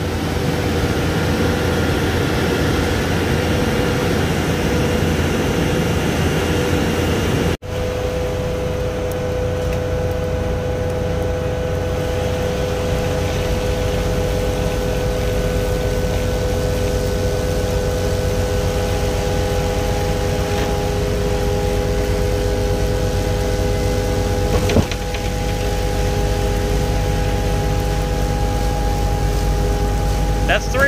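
Concrete pump truck running while pumping: its engine and hydraulics make a steady mechanical noise with a constant whine. There is a momentary break about seven and a half seconds in and a single sharp knock near the end.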